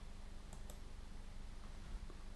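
A computer mouse double-clicked faintly about half a second in, over a low steady electrical hum. The clicks come while resetting a pen-writing setup that has stopped writing.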